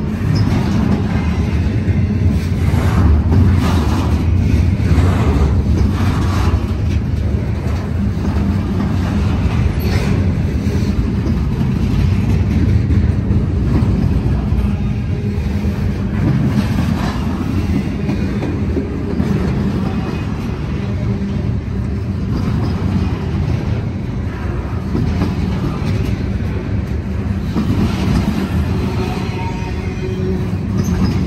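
Freight train cars rolling past at close range: a steady, loud rumble of wheels on rail, with scattered knocks as wheels cross rail joints.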